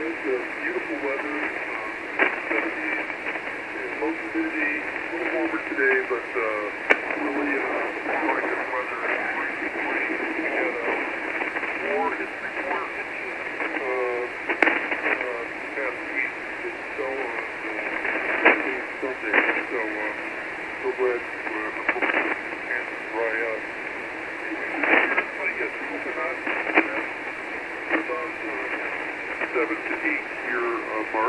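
Single-sideband voice from a 40-metre amateur radio transceiver's speaker: another station talking through band noise, the audio thin and band-limited, with a few crackles of static.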